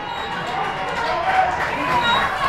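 Voices of people calling out at a distance, shouts and chatter with no close speaker.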